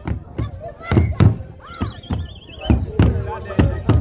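Dancers' feet stamping hard on the ground in a sibhaca dance, heavy thuds roughly two to three a second, with voices calling and chanting between them. A shrill trill sounds about two seconds in.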